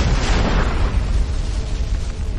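Animated-film sound effect of rock blasting apart: a sudden explosive crash at the start that breaks up into crumbling debris and fades over about a second, over a continuous deep rumble.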